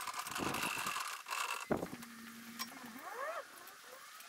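A wheeled wooden workshop trolley rolling over a concrete floor with a low rumble, then a sharp knock as it stops, followed by a few short rising squeaks.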